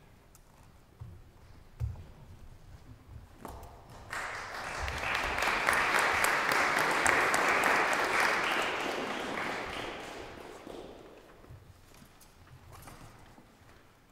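Audience applause that swells up about four seconds in, holds, and dies away by about eleven seconds. A few soft thumps and knocks come before it.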